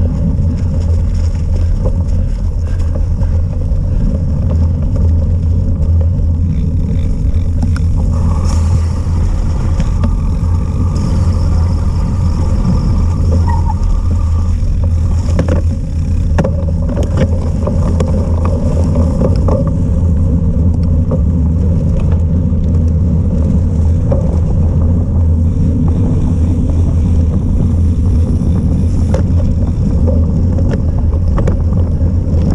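Steady wind buffeting on the microphone and the rumble of a cyclocross bike's tyres on dirt and tarmac while racing, with scattered knocks from bumps in the path.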